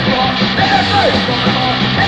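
Hardcore punk band playing with yelled vocals, their drawn-out lines falling off in pitch at the ends, in a raw rehearsal-room recording dubbed from cassette tape.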